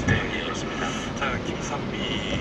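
Car cabin noise while driving on a wet road: a steady low rumble of road and engine, with indistinct talk over it.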